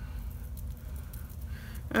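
A steady low hum with a few faint soft ticks as fingertips press a wet, foaming sheet mask against the face.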